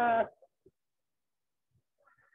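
The tail of a person's drawn-out, wavering hesitation sound 'uh', cutting off about a quarter second in, followed by near silence with a few faint ticks.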